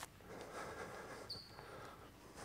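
Faint shuffling of people's feet on a wooden sports-hall floor as they move into position, with one brief high squeak about a second and a half in.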